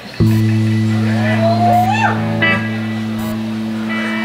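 Live band instruments holding a long, steady low note between songs, with a short sliding higher note over it about two seconds in.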